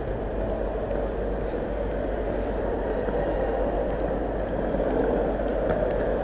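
Steady urban background noise, a continuous low rumble like traffic, with no distinct events.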